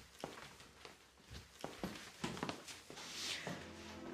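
Several people's footsteps and the small knocks of their movement as they get up from a sofa and walk across a room: a scatter of soft, irregular steps, with a brief soft rustle about three seconds in.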